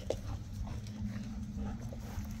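A dog growling low and quietly at another dog over tennis balls: a faint, steady grumble in the second half, over a low rumble.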